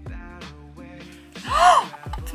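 Background music with a steady beat. About one and a half seconds in, a woman gives one short, loud, surprised exclamation that rises and then falls in pitch.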